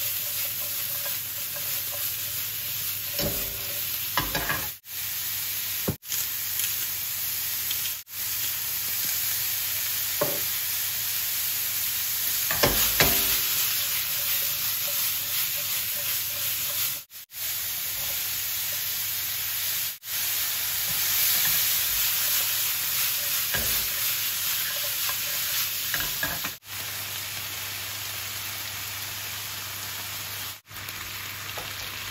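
Mushrooms and red bell pepper sizzling in olive oil in a non-stick frying pan on a gas hob, a steady frying hiss. A few short knocks and rattles come as the pan is tossed and the food stirred. The sound cuts out briefly several times.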